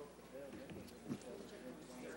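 Faint murmur of voices in a hearing room, with a few light knocks, the loudest about a second in.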